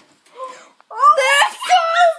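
A girl's high-pitched excited squeal, wavering in pitch, starting about a second in.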